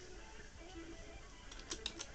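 Faint steady hum on a quiet call line, with a few computer keyboard clicks near the end.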